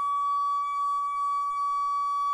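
A toilet's water inlet singing as water flows through its metal supply pipe: one steady, high-pitched humming tone with overtones. The owner puts it down to resonance where the metal pipe touches the plastic.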